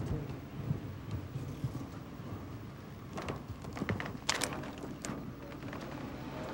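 Steady low rumble with a cluster of sharp clicks and knocks between about three and four and a half seconds in, and one more near five seconds: handling noise from a search inside a car.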